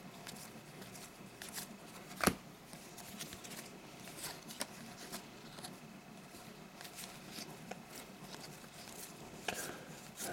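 2019-20 NBA Hoops trading cards being slid one past another by hand: faint, scattered soft clicks and rustles, with one sharper snap about two seconds in.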